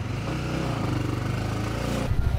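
Small motorbike engine running steadily at idle, just after being started.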